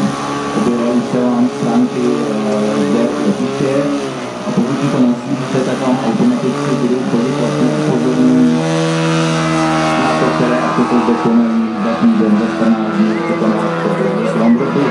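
Large-scale RC Pitts Special biplane's 3W two-stroke petrol engine running through aerobatics, its pitch sliding up and down as the plane manoeuvres, most clearly about two-thirds of the way through.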